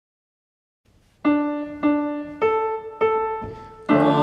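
Piano playing a short introduction to a hymn: four single notes about half a second apart, each ringing and dying away, the last two higher than the first two, starting about a second in.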